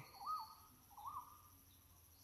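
A bird calling: a short whistled note that rises and falls, given twice under a second apart, quiet against a faint steady high insect drone.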